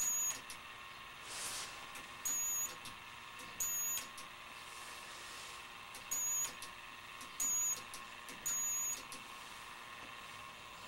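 Six short, high-pitched beeps at irregular intervals from a lifter's high-voltage power supply, sounding at its drive frequency, over a faint steady whine. The beeps come as the thinned air in the vacuum chamber breaks down into purple glow discharge.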